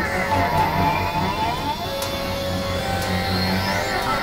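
Experimental electronic synthesizer drone music: steady low droning tones under many criss-crossing pitch glides, with a high tone sweeping upward near the end.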